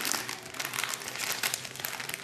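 Clear plastic bag crinkling in quick, irregular crackles as it is handled and lifted out of a package.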